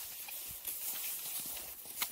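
Cross-country skis sliding on packed snow with a steady hiss, and a few light ticks and crunches as the ski poles plant in the snow.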